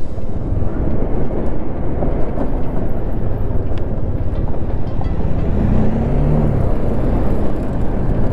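Motorcycle being ridden along a rough dirt track: a steady rush of engine and wind noise.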